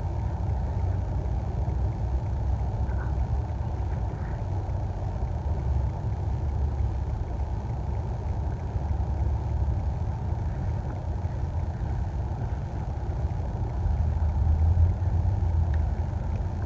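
A steady low rumbling noise with no clear pitch, swelling slightly near the end.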